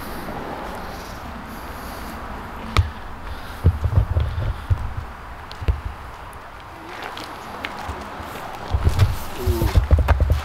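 Steady outdoor background noise with irregular low thumps and rumbles from a handheld camera carried by someone walking, and a sharp click about three seconds in.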